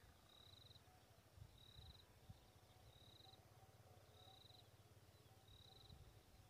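Near silence, with a small animal's faint, high trilling chirp repeating evenly about every 1.3 seconds, five times.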